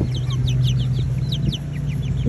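Young chickens, six to seven weeks old, peeping: a quick run of short, high, falling chirps, several a second, over a steady low hum.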